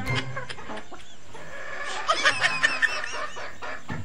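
Chickens clucking, with a quick run of short, high calls about two seconds in.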